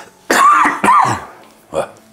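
A man coughing: two loud coughs within the first second, then a shorter, smaller one near the end.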